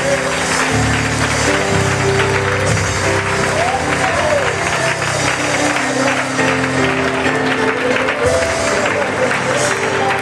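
Instrumental church music with sustained chords and a bass line, under clapping and voices from the congregation.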